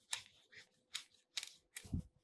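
A large fish knife cutting the upper fins off a large bonito: a handful of short, crisp snips and clicks at irregular intervals.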